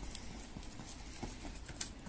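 Faint running footsteps on asphalt, with a sharper knock near the end as shoes strike a concrete wall during a climb.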